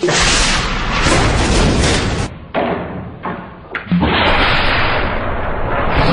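A loud blast in a small room, followed by a sustained rushing roar. The noise drops for a moment at about two and a half seconds, then comes back just as loud from about four seconds.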